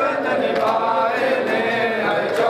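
A group of men chanting a mourning noha in unison, with rhythmic matam chest-beating slaps about once a second.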